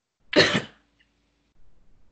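A single short cough from one person, heard through a video-call microphone.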